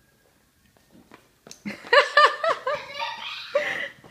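Near silence for about a second and a half, then a person laughs: a quick run of short, high-pitched laughs, with more laughing and voice sounds after it.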